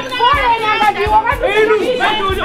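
Several voices shouting over one another, high-pitched and excited, over background music with a low recurring beat.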